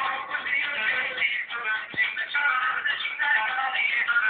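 Halay dance music with a melody line and some male singing, band-limited so it sounds thin and tinny.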